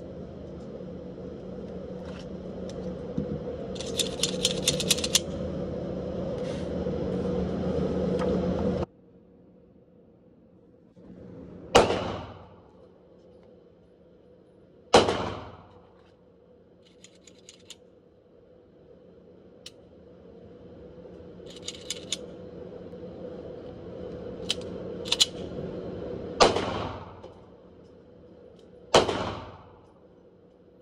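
Four single gunshots echoing in an indoor shooting range, spaced several seconds apart, with a few quick rattles of clicking between them, over a steady hum. The background noise drops abruptly about nine seconds in.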